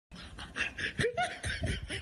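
A person laughing in a run of short bursts, a few each second.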